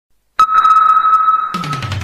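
Electronic sonar-style ping in intro music: a loud, steady high beep starts suddenly about half a second in and holds until near the end, joined by a low falling sweep from about a second and a half in.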